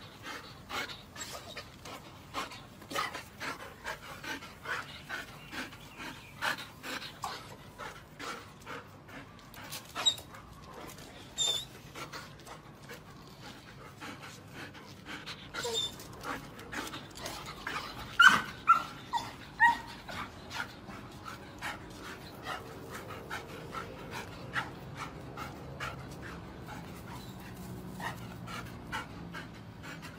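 Golden retriever panting rapidly and steadily, with a few short, high whines about two-thirds of the way through: an excited dog eager for a game of fetch.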